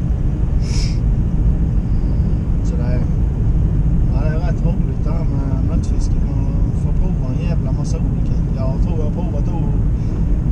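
Steady low road and engine rumble inside a moving car's cabin.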